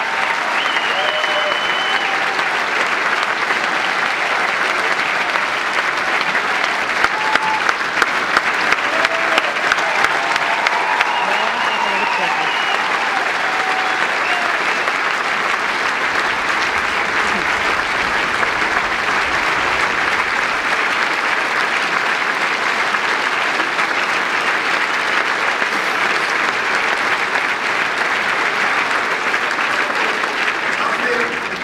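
Theatre audience applauding steadily, with voices cheering through roughly the first half. A few sharper, louder claps stand out close by from about seven to eleven seconds in.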